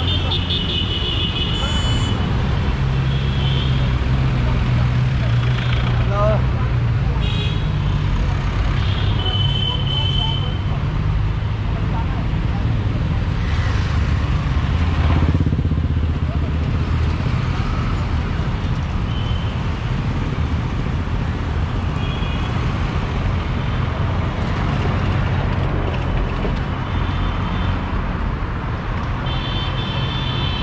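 Street traffic: engines of passing cars, buses and motorbikes running in a steady rumble, with short horn toots from different vehicles every few seconds.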